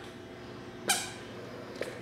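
Toddler squeaker shoes squeaking as a baby takes steps: a loud short squeak about a second in, then a fainter one near the end.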